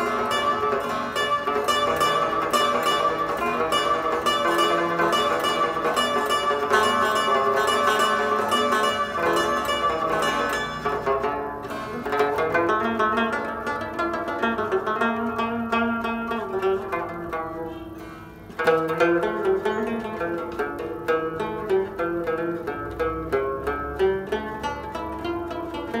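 Afghan rabab played solo in an unaccompanied alap, a slow improvised melody: fast runs of plucked notes over ringing strings that thin out and fade about eighteen seconds in, then a sharp new stroke starts a fresh phrase.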